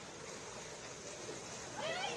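Feet wading and splashing through shin-deep floodwater, with a short high squeal that rises in pitch near the end, the loudest sound.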